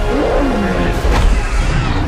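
Film soundtrack of a giant monster's cries, with pitch glides that fall and bend, over background music.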